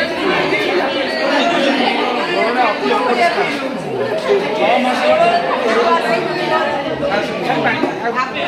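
Many people talking at once: steady overlapping chatter of a crowd, with no single voice standing out.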